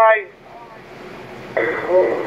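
Uniden Bearcat SDS200 scanner's speaker: a radio voice transmission cuts off just after the start, a second of faint hiss follows, then the next transmission comes in about one and a half seconds in as noisy radio audio with a steady high tone underneath.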